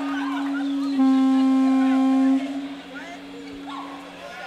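Electric guitar amp ringing in steady feedback: one sustained low tone that swells louder and brighter about a second in, then drops back about a second and a half later.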